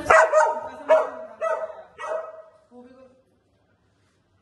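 A dog barking repeatedly: about five loud barks in quick succession, then a few fainter ones before it stops just after three seconds in.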